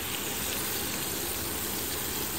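Rohu fish steaks frying in hot oil in a pan: a steady, even sizzle.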